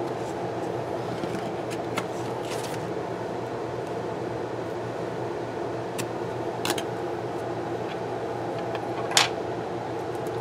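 Steady fan-like hum in the room, with a few light clicks and paper handling as planner stickers and a small hand tool are worked on the page; the sharpest click comes about nine seconds in.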